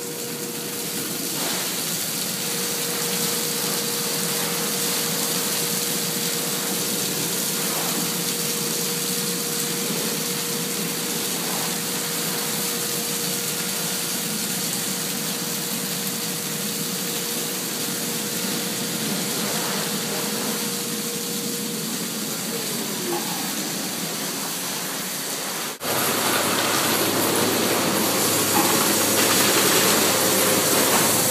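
Hot carnauba wax solution gushing and splashing down in a foamy cascade from an NS Bubblizer applicator in a car-wash tunnel, with a steady hum that fades out about three-quarters of the way through. After a sudden cut near the end, a louder steady rush of spraying water.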